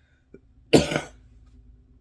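A woman coughs once, a single short cough a little under a second in.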